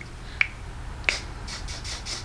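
Two sharp clicks, then a few quick short hisses of Kenra Dry Oil Control Spray being sprayed onto hair.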